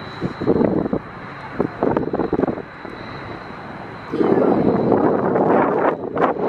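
Wind buffeting the camera's microphone in irregular gusts, turning to a louder, steadier rush from about four seconds in.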